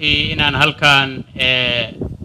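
A man's voice speaking into microphones at a lectern.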